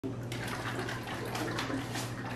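Coconut milk sloshing inside a sealed can shaken by hand, a quick irregular run of wet sloshes. It is being shaken to remix the milk after it has separated from sitting.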